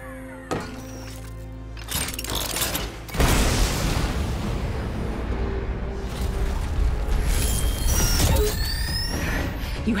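TV drama soundtrack: dramatic score under sci-fi sound effects. About three seconds in, a loud rushing blast begins as an armored suit's boot thrusters fire for take-off, and it carries on to the end, with rising electronic whooshes near the end.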